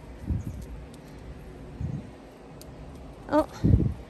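Three dull low thumps of footsteps and handling of a hand-held phone while a dog is walked through a metal stile on a dirt path; the last, near the end, is the loudest.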